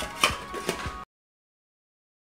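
A stainless steel pet fountain lid being set onto its metal bowl: a couple of sharp metallic clinks. The sound cuts off abruptly about halfway through, leaving dead silence.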